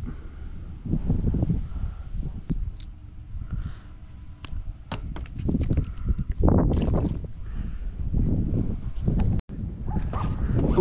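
Wind buffeting the microphone as a low, uneven rumble, with sharp clicks from handling a spinning rod and reel while a shrimp-baited line is cast out, and a louder rush a little past halfway.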